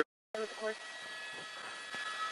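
Brief dead silence, then the faint steady hiss of an open radio channel between transmissions, with two short pitched blips about half a second in.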